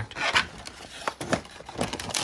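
Cardboard doll packaging being handled: rubbing and scraping of the box and its insert, with a few short, sharp scrapes.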